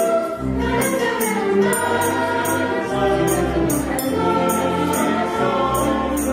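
Mixed choir singing with a string orchestra in a Salvadoran folk arrangement, held chords moving in steady phrases. Light high percussion strokes mark a beat about twice a second.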